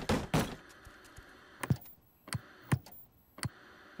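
A brief rush of noise at the start, then four light, sharp knocks spread over about two seconds: cartoon knocking sound effects.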